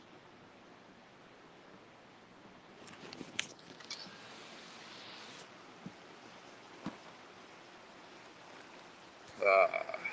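Rubbing and a few soft knocks from a phone being handled and turned, over a low steady hiss, then a short burst of a man's voice near the end.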